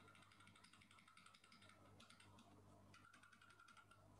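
Near silence with faint rapid clicking in two runs, one through the first couple of seconds and another near the end.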